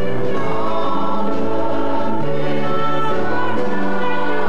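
A group of voices singing a slow song in long held notes that change about once a second.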